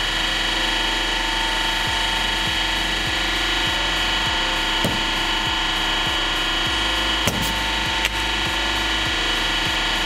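Hydraulic press running with a steady hum and whine, pulsing low about twice a second, as its ram squashes a C-size alkaline battery. The battery's metal casing gives a few sharp cracks as it buckles, about five seconds in and twice more near the end.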